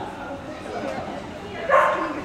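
A dog barks once, short and loud, about one and a half seconds in, over a background of voices in a large hall.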